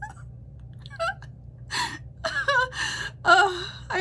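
A woman laughing hard: breathless, gasping, high-pitched laughs in several short bursts, growing louder over the last two seconds.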